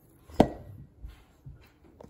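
Kitchen handling sounds while rolling oat protein balls by hand over a stainless steel mixing bowl: one sharp knock about half a second in, then three softer knocks.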